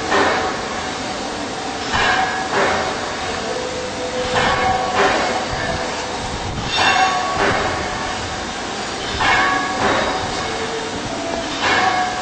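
Woodworking carbide tool grinder's wheel grinding a carbide cutter in repeated passes. Each pass brings a short, ringing grinding screech, usually in pairs, about every two and a half seconds, over a steady running hum.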